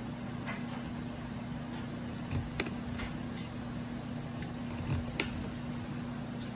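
Quiet room tone: a steady low electrical-sounding hum with a few faint clicks and two soft knocks.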